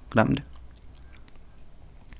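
A man says one short word, then pauses; the pause holds only faint, small clicks over quiet background hiss.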